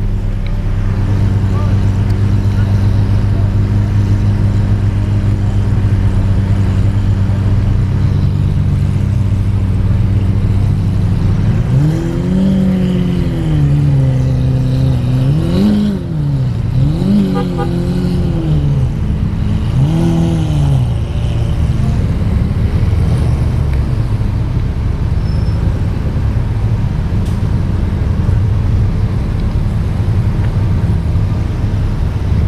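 Sports car engines idling with a steady low hum. About twelve seconds in, an engine is revved in four blips, each rising and falling in pitch, the last near the twenty-second mark. After that the idle carries on.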